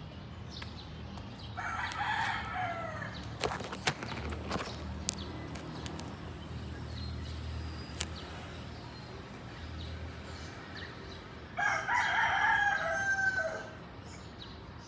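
A bird's long call heard twice, about ten seconds apart, each call ending on a falling note, with a few sharp clicks in between.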